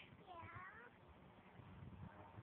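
Near silence, with one faint, brief high-pitched squeal in the first second.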